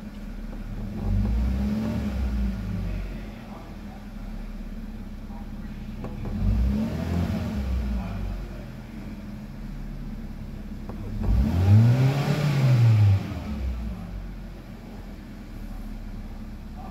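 2012 Hyundai i20's 1.4-litre petrol four-cylinder engine idling, revved three times; each rev rises and falls back to idle, and the third, near the end, goes highest and is the loudest.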